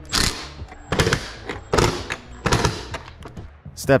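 Cordless impact driver running in four short bursts, about one every 0.8 seconds, driving in the bolts of a motorcycle fender-eliminator bracket.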